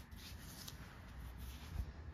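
Faint rubbing: a hand brushing over a freshly clipper-shaved scalp, with a few soft scuffs over a low hum.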